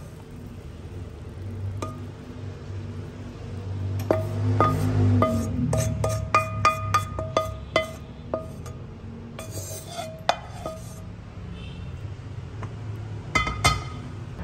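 A metal utensil clinking and scraping against a ringing dish, a quick run of strikes from about four to eight seconds in and a few more later, with music underneath.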